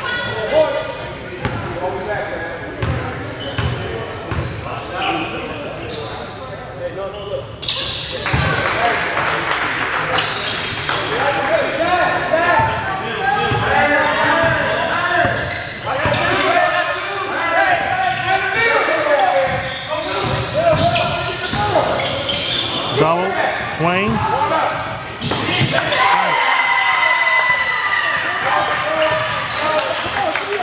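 Basketball dribbled and bouncing on a hardwood gym floor during live play, with players' and onlookers' indistinct shouts and calls, echoing in a large gymnasium. The sound gets louder about eight seconds in.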